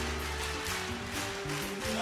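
Live band music with a steady beat, with a low bass note held at the start.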